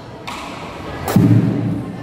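Marching bass drums of a drum and lyre band struck sparsely: a lighter hit just after the start, then one heavy, deep boom with a sharp attack about a second in that rings on briefly.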